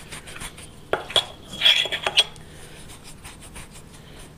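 Silver coins clinking against each other, a handful of sharp metallic clicks between about one and two seconds in, with a short high ring.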